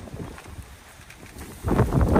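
Faint outdoor noise, then a sudden loud low rumble of wind buffeting the microphone near the end.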